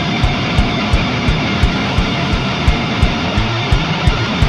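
Heavy crust punk music: a wall of distorted electric guitar and bass over a driving drum beat, with hard hits about three times a second.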